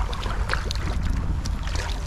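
Kayak paddle strokes: the blades dipping and water dripping off them in a few small splashes and ticks, over a steady low rumble.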